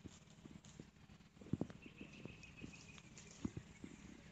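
Faint, irregular low thumps of footsteps on the ground, with handling knocks on the handheld camera, as it is carried through the plantation on foot.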